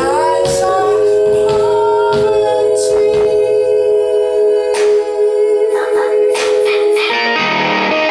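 Live indie rock band: several voices hold long notes together in close harmony over guitar, with scattered sharp drum and cymbal hits. Near the end the held chord breaks off and the band moves into a busier passage.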